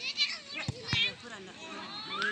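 Scattered voices of players and onlookers calling out across an outdoor football pitch, with two short dull thumps a quarter-second apart about two-thirds of a second in.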